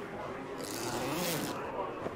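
A zipper pulled shut on a suit, one hissing run lasting about a second, starting about half a second in, over faint background voices.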